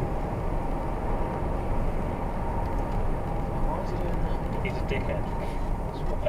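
Steady road and engine noise of a car driving at speed, heard from inside the cabin.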